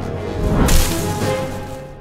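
Cartoon whoosh effect of a tree branch whipping through the air and flinging a flying squirrel: one fast swish, loudest just under a second in, over orchestral film score.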